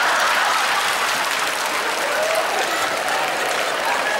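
Audience applauding steadily in a hall, in response to the punchline of a stand-up joke.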